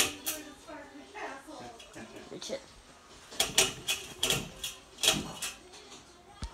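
Low, indistinct talking, with a sharp click right at the start and a run of short noisy bursts a little past halfway.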